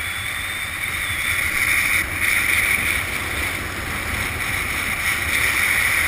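Steady wind rushing over the camera microphone during a parachute descent under canopy, a noisy hiss with low rumble that swells a little about two seconds in and again near the end.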